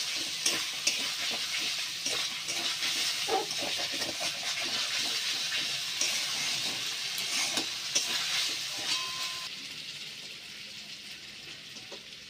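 Potato cubes sizzling in hot oil in a wok, stirred with a metal spatula that scrapes and clicks against the pan. The sizzle drops much quieter about three-quarters of the way through.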